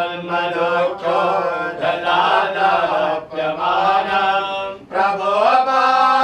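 Sanskrit devotional chanting to Shiva, sung in long, held melodic phrases with brief breaks for breath between them.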